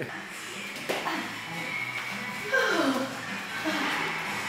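Indistinct voices in a room, with faint music beneath them.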